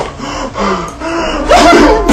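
A man's gasps and wordless vocal sounds, louder about one and a half seconds in.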